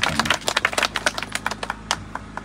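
Several people in a crowd clapping: quick, irregular hand claps that thin out after about a second and a half, with one last loud clap near the end.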